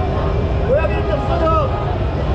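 Voices of people talking nearby, a few short phrases about a second in, over a steady low rumble of street noise.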